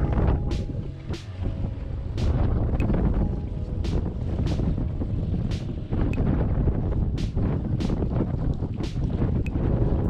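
Strong wind buffeting the microphone in a heavy, steady low rumble, over choppy water.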